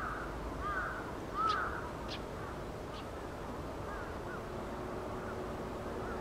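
Birds calling in short, arched chirps, a cluster in the first second and a half and a few more about four seconds in, over steady outdoor background noise; a faint low steady hum comes in about four seconds in.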